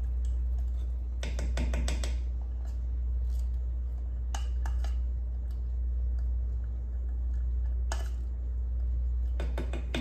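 Short clinks and knocks of a plastic measuring cup against a pot as heavy cream is poured in, coming in small clusters about a second in, around the middle and near the end, over a steady low hum.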